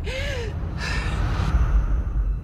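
A young woman breathing hard in two sharp gasps, the first with a brief voiced catch, the second about a second in, over a low rumbling drone.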